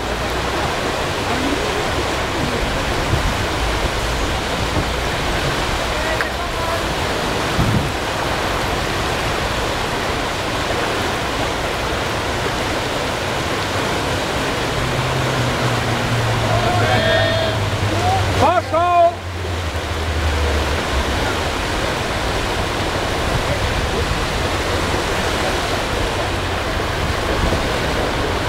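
Steady, loud rush of whitewater pouring over a canoe slalom course's drop and rapids, with brief distant human voices about two-thirds of the way through.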